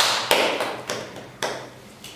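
Several sharp taps at irregular spacing, the first the loudest, dying away over about a second and a half.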